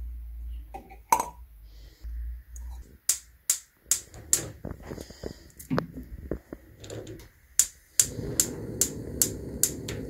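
Clinks and knocks of a small stainless steel pot being handled and set on a gas stove's iron grate. Then a gas burner's igniter clicks several times, and about eight seconds in the burner catches with a steady low rush.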